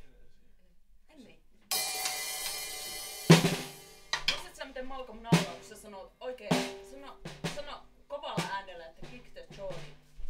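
A drum kit struck hit by hit with no steady beat: a cymbal rings for about a second and a half, then a loud drum hit, then about six more drum and cymbal hits at uneven spacing.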